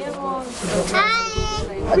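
Voices in conversation, with a young child's high-pitched squeal about a second in.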